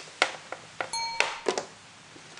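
A short electronic ding chime about a second in, ringing briefly with a clean bell-like tone, amid light clicks from test probes and resistor leads being handled.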